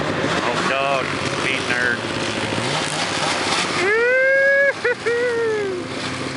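Snowmobile engines running on the ice, the pitch rising now and then as they rev. A person shouts loudly over them about four seconds in: one long held call, two short ones, then a falling call.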